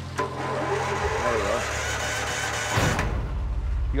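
Low, steady hum of heavy mining equipment's engine idling, with a brief rush of noise near the end.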